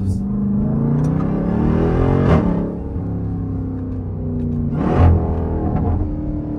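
Jeep Grand Cherokee Trackhawk's supercharged 6.2-litre V8 accelerating, heard from inside the cabin. The engine note rises in pitch for about two seconds and breaks at an upshift, then climbs again to a second shift about five seconds in.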